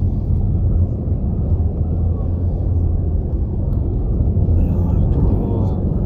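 Steady low rumble of a vehicle's engine and road noise, heard from inside the slowly moving vehicle.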